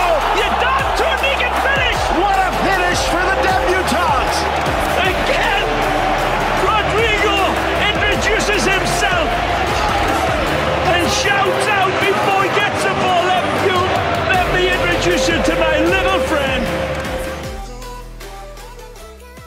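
Football stadium crowd cheering, with many voices, over a background music track with a steady bass line. Everything fades out near the end.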